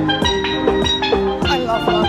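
A tuned steel drum played in the street: a quick melody of struck, ringing metallic notes, about four a second.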